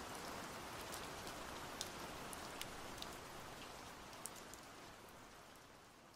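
Faint steady rain, with a few sharp drop ticks here and there, fading out over the last two seconds.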